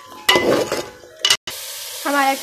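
Chicken curry sizzling in an aluminium pot, heard as a steady hiss over the second half. Before the hiss there are two sharp metallic knocks, like the ladle against the pot. The sound drops out completely for a moment just before the sizzle starts.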